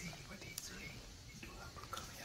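Faint, hushed whispering voices with a few small clicks.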